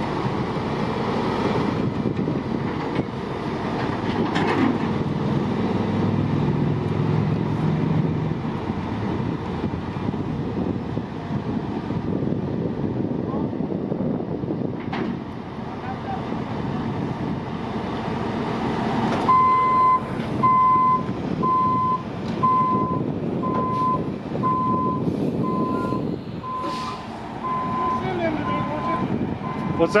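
Heavy truck diesel engines running steadily during a crane lift, joined a little past halfway by a backup alarm beeping at an even pace, about one and a half beeps a second.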